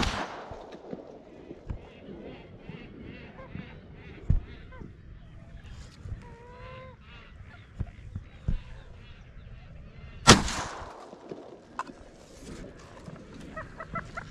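Two shotgun shots, one right at the start and another about ten seconds in, each trailing a long echo. Between them, a run of short repeated calls from marsh birds, two or three a second.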